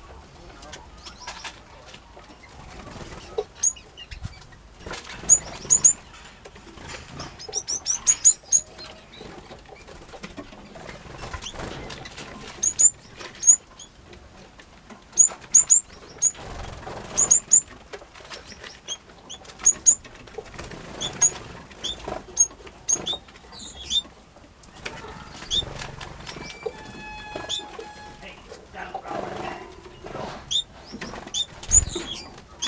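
Aviary finches, Gouldian finches among them, giving many short, high-pitched chirps, scattered and sometimes in quick runs. A short held whistle comes late on.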